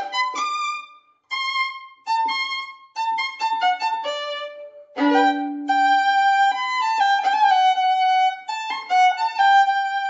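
Solo violin bowed, playing a classical melody of short and held notes. There is a brief pause about a second in, and a chord of two notes bowed together about halfway through.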